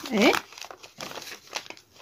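Sheets of paper crinkling and rustling in short, uneven rustles as a folded paper dress pattern is handled and pinned together.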